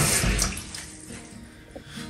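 Water pouring, loudest at the start and fading away over about a second and a half.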